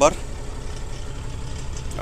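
Tata heavy truck's diesel engine idling steadily, heard from inside the cab as a low hum.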